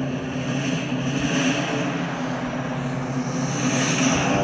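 Film soundtrack: a held low note under a steady rushing, engine-like noise that swells about a second in and again near the end.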